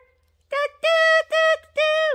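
A woman's voice singing a short sing-song phrase: four short held notes on nearly the same high pitch, beginning about half a second in.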